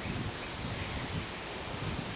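Steady rustling noise with irregular low rumbles of wind on the microphone, and a short click right at the start.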